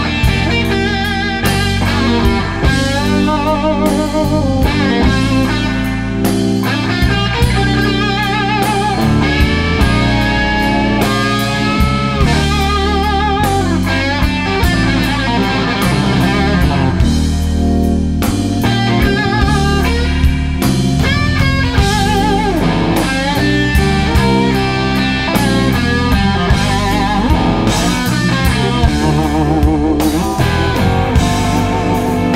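Slow blues band: electric lead guitar playing bent notes with wide vibrato over bass, keyboards and drums.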